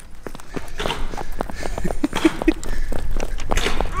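Footsteps of people setting off at a quick pace, a fast, irregular run of steps, with a short laugh about two seconds in.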